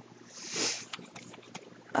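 A single soft breath out close to the microphone, a short whoosh that swells and fades about half a second in, followed by a few faint ticks.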